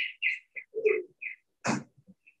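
A small bird chirping: a quick run of short high chirps, about three a second. A brief noisy burst comes near the end.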